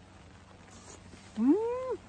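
A woman's short 'mmm' hum of enjoyment through a mouthful of food, rising in pitch then dipping slightly, about half a second long near the end.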